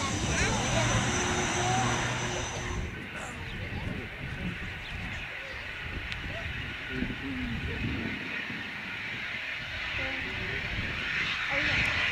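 Business jet engines at taxi power: a high steady whine over a low hum for about the first three seconds. After that comes a steadier, more distant jet noise that grows louder near the end as a second business jet rolls along the runway.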